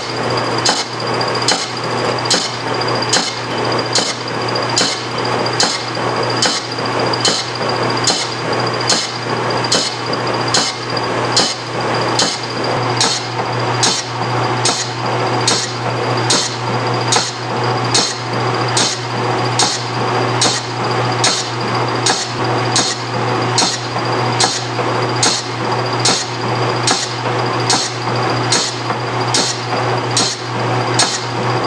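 A lathe facing a cast iron bracket in an interrupted cut: the tool bit strikes the casting each time its broken surface comes round, giving a regular knock about one and a half times a second over the steady hum of the running lathe.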